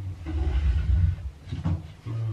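Things being handled on a bathroom counter: a low rumbling scrape for about a second, then a single knock near the end.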